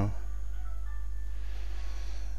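A steady low hum, with a few faint thin tones about a second in.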